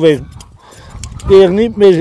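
A man talking, with a short run of light metallic clicks from sheep shears snipping through fleece in the pause between his phrases.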